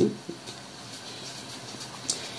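Faint steady hiss of room tone as a voice trails off at the start, with no distinct sound event.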